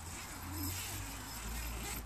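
Quiet low rumble with a soft hiss: a phone's microphone being moved about and handled while filming.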